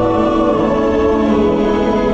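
Live orchestra and choir performing together, voices and instruments holding sustained chords at a steady loud level.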